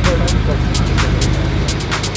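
A car engine idling with a steady low rumble, faint voices in the background.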